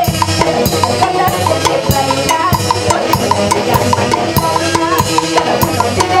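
Live band of saxophones and clarinets playing an instrumental passage over a steady drum beat.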